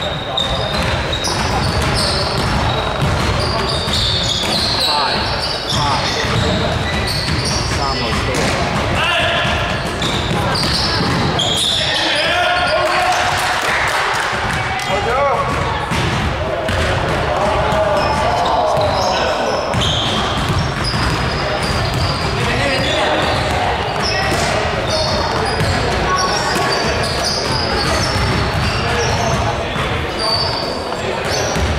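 Indoor basketball game: a basketball bouncing on a hardwood gym floor amid players' shouts and footfalls, all echoing in a large gymnasium.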